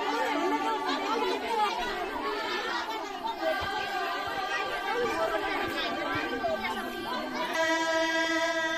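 Crowd chatter from a large outdoor gathering, mixed with a group of women singing long held notes in unison. The singing grows stronger and clearer near the end.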